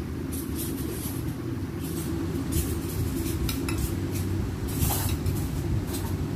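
Metal utensils scraping and clinking against plates and serving dishes, a scatter of short light clinks, over a steady low rumble.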